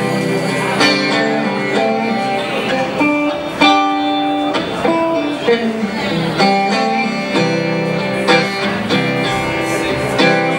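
Live electric guitar, a Telecaster-style solid-body, playing an instrumental passage of the song with no singing: picked chords and notes that change about every half second.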